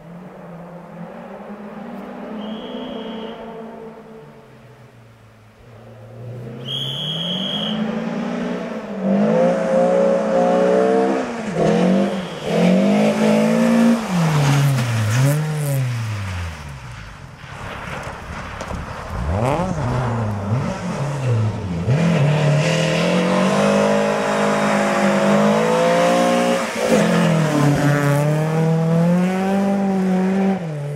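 Volvo 940 rally car on a gravel hillclimb, its engine revving up and falling back again and again through gear changes as it drives hard up the course. It is first heard about six seconds in and is loud for most of the rest, easing briefly in the middle.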